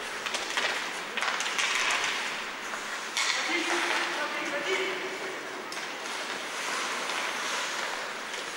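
Ice hockey play: skate blades scraping and carving the ice, with scattered clicks and clatter of sticks and puck. Faint voices from the rink are heard under it.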